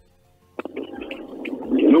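A short pause of near silence, then about half a second in a rough, gravelly voice-like sound starts and grows louder, running into a man's speech near the end.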